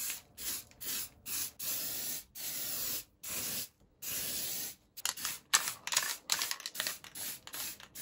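Aerosol can of matte black spray paint hissing in a series of short bursts with brief gaps between them, the longest lasting up to about a second, the bursts getting shorter and quicker after about five seconds.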